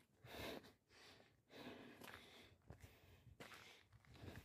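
Faint breathing of a person climbing steep stone steps, about one breath a second.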